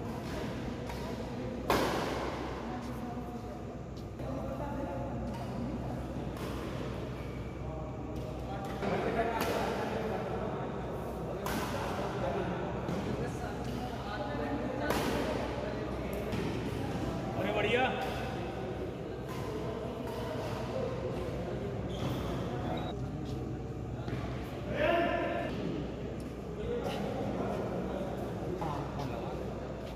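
Badminton rackets striking a shuttlecock during doubles rallies: sharp hits at irregular intervals, echoing in an indoor hall, with voices calling out now and then.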